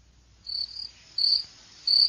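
Cricket chirping: a series of short, high chirps, about four in two seconds, over a faint low hum.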